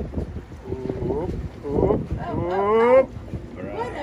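Human voices: short vocal sounds about a second in, then one drawn-out exclamation that rises in pitch and breaks off sharply at about three seconds.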